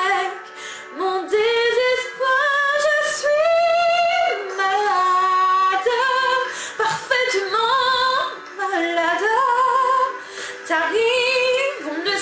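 A woman singing a slow French ballad solo, with long held notes that waver in vibrato and glide between pitches, and short breaths between phrases.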